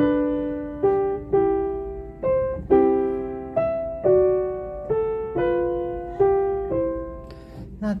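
Yamaha upright piano played slowly with both hands: a simple melody of single notes and two-note chords, struck about every half second, each ringing and fading before the next.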